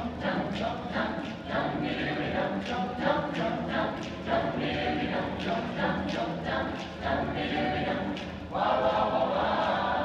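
A choir singing, in short clipped syllables at a steady pulse; a fuller, louder held chord comes in about a second and a half before the end.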